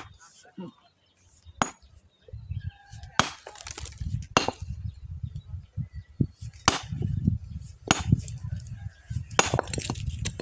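Small sledgehammer striking a large stone, seven sharp blows one to two seconds apart, each with a brief bright ring of steel on rock, as the stone is broken apart.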